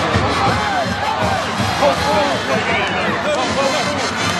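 Celebrating crowd on a football field, many voices shouting and cheering at once, with music mixed in.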